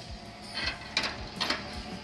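Several light metallic clicks and knocks as a small steel stove door on a waste-oil heater is swung shut and its clamp latch is handled.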